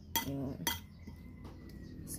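A metal spoon clinking twice against a white bowl while stirring shredded bamboo shoots; the second clink rings briefly.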